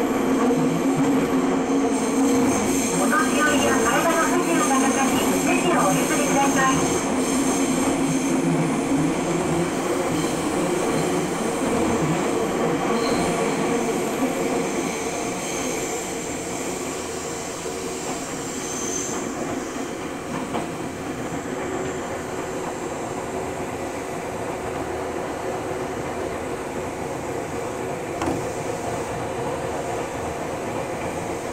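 Nagoya Municipal Subway Tsurumai Line 3000-series train running through a tunnel, heard from inside the car: steady running noise with a motor hum. It is louder for roughly the first half, then eases down.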